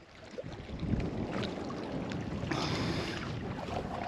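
Wind buffeting the microphone, a steady rumbling noise that swells in about half a second in, with small waves lapping on the lake shore.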